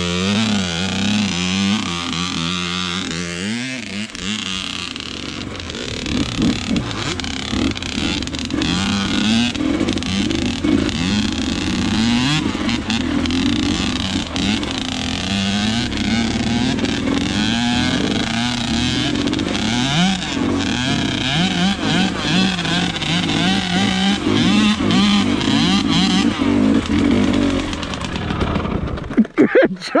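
KTM dirt bike engine revving up and down through repeated throttle changes on a rough trail. The engine note drops away about a second before the end.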